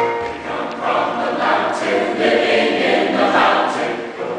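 A mixed choir of men's and women's voices singing together in full voice.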